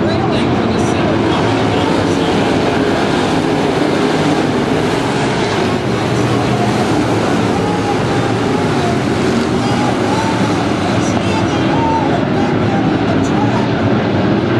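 A pack of dirt-track race cars' V8 engines running together, loud and steady, with individual engines' pitch wavering up and down as they go around the track.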